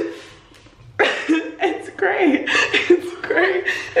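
Young women laughing and exclaiming in short, broken fits of voice, starting about a second in after a quiet moment.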